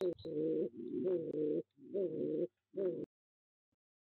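A pigeon cooing close to the microphone inside a wooden nest box: a run of about four coos over three seconds, the last one short.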